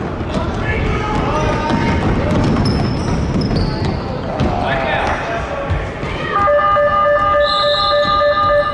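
Basketball game sounds echoing in a gym: sneakers squeaking on the hardwood floor, a ball bouncing and voices in the hall. From about six seconds in, a long, steady pitched tone sounds over it.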